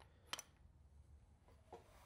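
Near silence: room tone, with a single faint click about a third of a second in.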